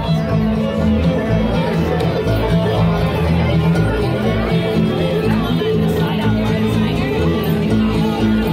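A live bluegrass band playing, heard through the chatter of a crowd around the listener.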